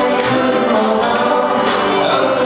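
Live band music: singing over acoustic guitar, electric guitar and drums.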